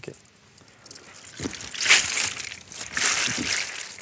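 Oysters rattling and grinding against each other inside a plastic mesh oyster bag as it is shaken and turned in shallow seawater, with water sloshing. It starts about a second and a half in and is loudest at about two and three seconds in. Shaking the bag breaks off part of the oysters' fresh shell growth so they grow round.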